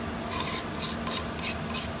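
The lens of a laser printer's galvanometer being unscrewed, its threads giving short rasping strokes about three times a second.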